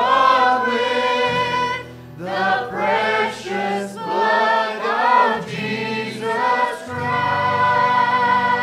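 A church worship team and congregation singing a slow worship song together, in long held phrases over sustained instrumental accompaniment.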